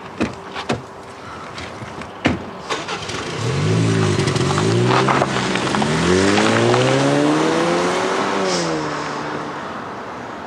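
A car door clicking open and shutting with a knock about two seconds in, then a Range Rover Velar SUV's engine pulling away, its pitch rising and dropping back in steps as it accelerates up through the gears, then falling away and fading near the end.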